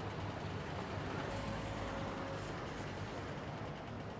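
Steady hum of distant city traffic, even and unbroken, with a faint thin tone for about a second in the middle.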